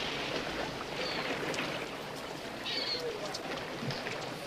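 Even wash of pool water as a diver in a wetsuit swims underwater, with a couple of faint short chirps about a second in and near three seconds.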